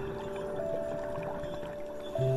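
Soft piano music in a lull between phrases: a couple of held notes ring on and fade, over a steady low rushing noise like water.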